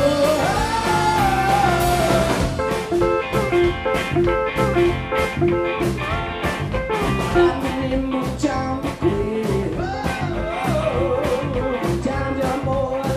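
A live rock band playing electric guitar, bass guitar, drums and pedal steel guitar. A man sings over it for the first two seconds and again near the end, with an instrumental stretch of repeated picked notes and steady drum hits in between.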